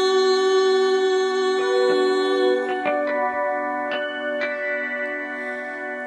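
Slow instrumental backing music in a pause between sung lines. A long held chord gives way to changing chords, with a few single plucked or struck notes.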